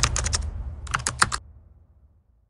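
Keyboard typing sound effect: two quick runs of key clicks over a low rumble, with the clicks stopping about one and a half seconds in and the rumble fading after them.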